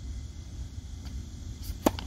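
A tennis racket striking the ball on a forehand: one sharp pop near the end, over a steady low rumble of wind on the microphone.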